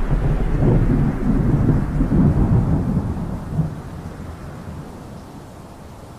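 Thunder rumbling, loud and deep for the first three seconds or so, then dying away.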